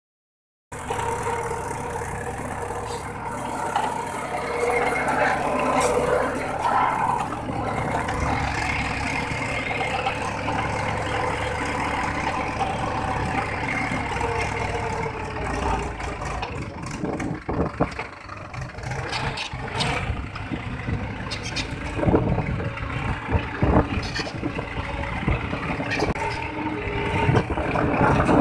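Mahindra 585 DI tractor's diesel engine running steadily under load while pulling an 11-tine cultivator through the soil, heard from the driver's seat. Irregular knocks and rattles join in over the second half.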